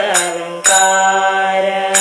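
A woman singing a devotional chant: a gliding phrase, then one long held note from just under a second in, with a few sharp percussion strikes.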